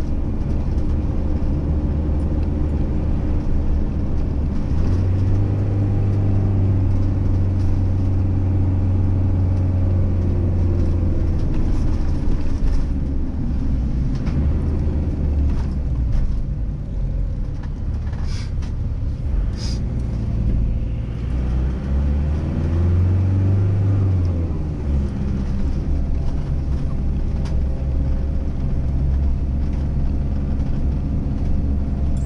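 Motorhome's engine and road noise heard from inside the cab while driving: a steady low drone whose pitch steps up and down as the vehicle slows and speeds up.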